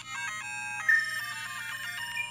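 LEGO Mario interactive figure's built-in speaker playing its electronic end-of-course coin-tally tune: a quick run of stepped, beeping notes, with a loud held note about a second in. It is counting up the coins collected on the run.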